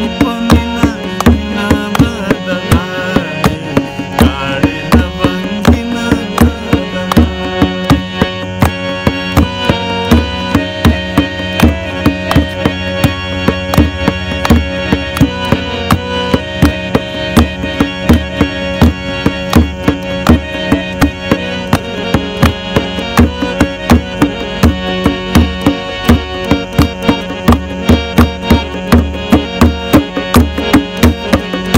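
Harmonium playing a ghazal melody over a steady tabla rhythm, an instrumental passage with no singing.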